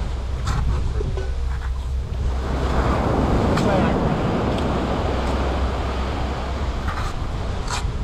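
Surf washing onto the shore with wind rumbling on the microphone, swelling in the middle. A handful of short sharp knocks come through it, from a knife chopping into the husk of a young coconut.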